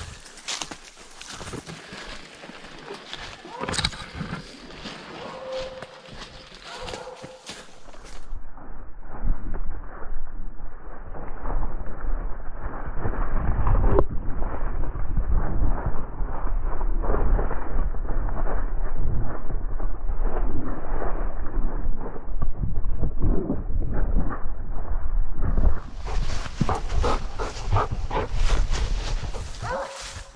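Handling noise from a camera strapped on a blood-trailing dog as it moves and works at the downed deer: loud, muffled rubbing and thumping with a heavy low rumble, in the middle stretch. Before and after it come quieter crackles of dry leaves being moved by hand.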